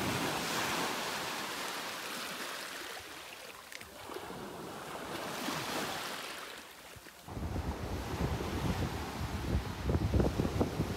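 Small waves breaking and washing up on a sandy shore, swelling at the start and again about five seconds in. From about seven seconds in, gusty wind buffeting the microphone takes over.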